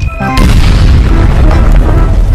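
An explosion sound effect over background music: it starts suddenly about a third of a second in and carries on as a long, loud, noisy rumble with heavy bass.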